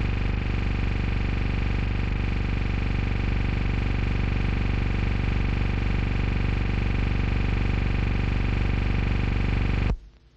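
Steady electrical hum and buzz with many overtones, mixed with static hiss, on the soundtrack of an archival newsreel film transfer. It cuts off suddenly near the end.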